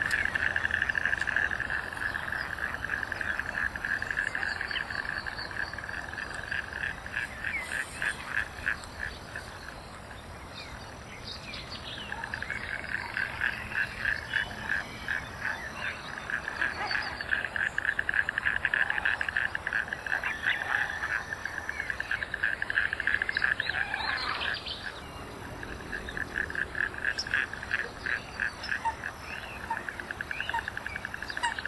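Frogs trilling in long, fast-pulsed bouts at one steady pitch, several voices overlapping. There is a brief lull about ten seconds in and another about twenty-five seconds in.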